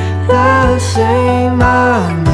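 Song with acoustic guitar accompaniment and a singing voice holding and bending long notes without clear words.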